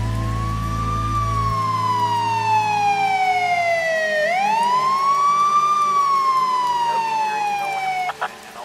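A siren wailing over the close of a song: two cycles, each a quick rise in pitch followed by a slow falling glide. The last low notes of the music stop in the first few seconds.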